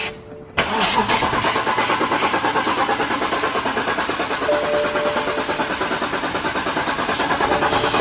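BMW 6 Series 4.8-litre V8 turning over on the starter in a fast, even rhythm for about seven seconds without catching, with starting fluid sprayed into its intake. It suggests the engine may not be getting fuel.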